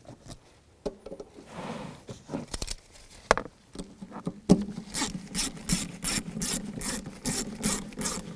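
Hand ratchet on an extension turning a floor-cover bolt in, a steady run of ratcheting clicks at about four a second starting a little past halfway. Before that come scattered light clicks and rubbing as the bolt is started.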